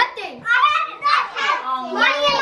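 Young children's voices, excited high-pitched talking and calling out while they play.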